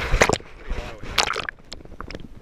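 Sea water sloshing and splashing against a handheld GoPro at the surface, in two short bursts, one at the start and one just past a second in.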